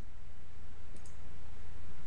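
A single faint mouse click about a second in, as a key is pressed on a calculator emulator, over a steady low hum.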